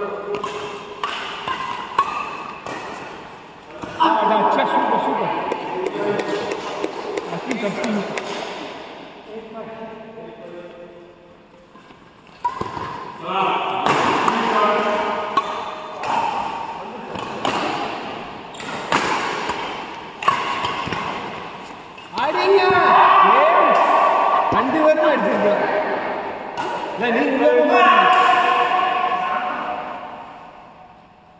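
Badminton rally: repeated sharp racket strikes on a shuttlecock at irregular intervals, ringing in a large echoing hall, with players' voices in between.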